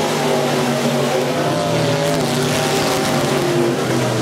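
Dirt-track Sport Mod race cars' V8 engines running hard at high revs as two cars race past, the pitch wavering slightly as they drive through the turn and down the straight.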